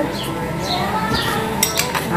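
A metal spoon clinking a few times against a bowl near the end, as a bowl of chopped olives is picked up.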